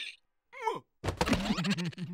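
Cartoon larva characters making wordless voice sounds: a short falling squeal about half a second in, then a longer wavering, creaky groan.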